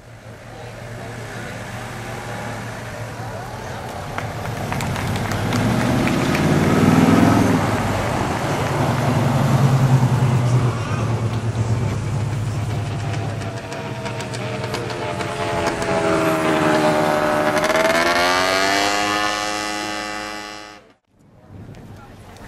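Motor vehicle engines running on the road, with a steady low hum. In the second half one vehicle accelerates and its engine pitch climbs. The sound cuts off abruptly near the end.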